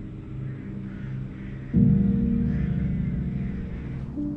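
Sombre background film score: low held notes, then a deep struck note about two seconds in that rings on and slowly fades.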